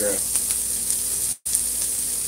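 Diced smoked pork belly and onion frying in a pan, a steady sizzle. The sound cuts out completely for a moment about a second and a half in.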